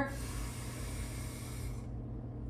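A woman's long, deep inhale, a steady rush of breath that stops near the end as she holds it, over a steady low hum.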